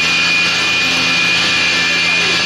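Stationary woodworking machine running steadily with a constant high whine and a low hum while a board is fed through it.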